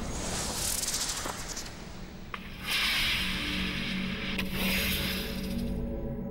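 Hissing, rushing bursts of rockets firing from a handheld Chinese 'bee's nest' multiple rocket launcher. They come loudest in two long rushes starting about two and a half seconds in, over a low, steady music drone.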